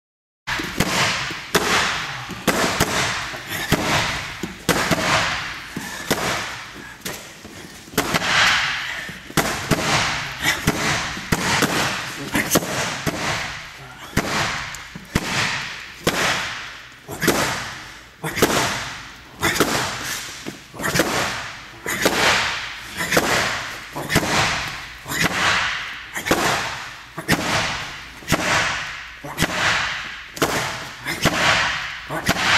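Fists striking a wall-mounted wooden makiwara post again and again, a sharp crack roughly once a second, each followed by a short fading tail.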